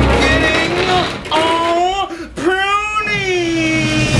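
A singing voice holding long notes that slide in pitch, over music, with a short break about two seconds in.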